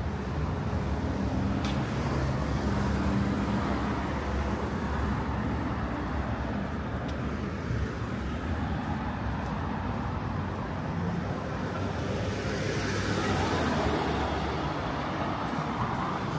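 Street traffic: a low, steady engine hum, then a vehicle driving past near the end, its tyre noise swelling and fading.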